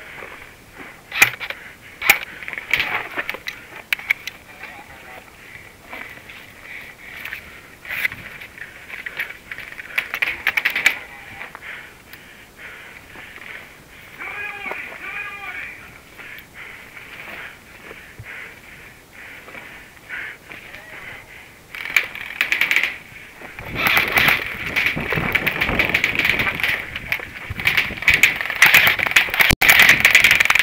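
Airsoft guns firing during a game: a few separate sharp cracks in the first ten seconds, then rapid, near-continuous firing through the last eight seconds or so.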